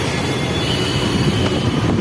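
Steady background rumble and hiss with a faint, thin high whine running through it.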